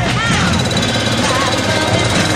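Four-wheeler ATV engine running steadily with a rapid, even pulse as the machine moves off at low speed.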